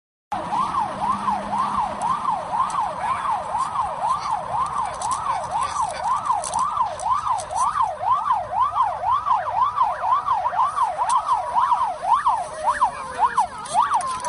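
Police patrol car siren sounding a fast up-and-down yelp, about two to three sweeps a second, during a pursuit; it starts abruptly. A second, falling siren tone joins near the end.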